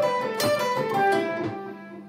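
Electric guitar (Stratocaster-style) playing a quick descending five-note run down the G major pentatonic scale, starting from the 15th fret of the B string and ending on the 14th fret of the D string. The notes step downward in pitch and the run fades toward the end.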